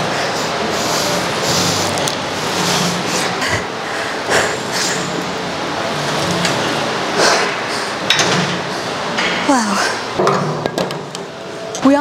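Hard breathing and effort exhales close on a clip-on mic during Smith machine reverse lunges, coming about once every two seconds in time with the reps, with a few light knocks in between.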